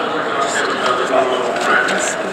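Speech: a person talking, with no other distinct sound.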